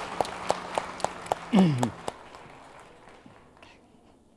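A few scattered hand claps, sharp and separate at about four a second, die away after a second and a half into quiet room sound. A single short word is spoken midway.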